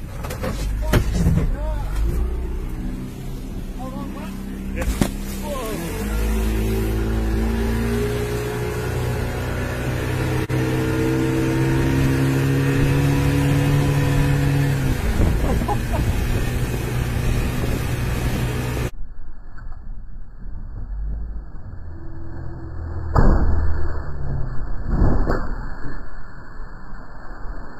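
Outboard motor running hard as the boat speeds over choppy water, with the rush of wind and water; its pitch climbs steadily for several seconds, then eases off. About two-thirds of the way through the sound cuts to a duller, muffled recording with a few sharp splashes or knocks near the end.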